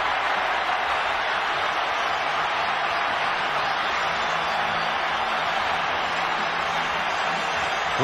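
Steady noise of a large football stadium crowd cheering and applauding after a goal.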